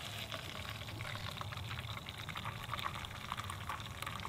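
Hot coffee poured in a steady stream from a Jetboil cup into a titanium mug pot, splashing and trickling into the liquid already in the pot. The grounds have been settled with cold water, so the stream runs clear of grinds.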